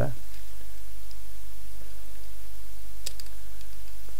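A steady low hum with faint hiss, and a single small click about three seconds in as the plastic fuselage halves of a model kit are handled.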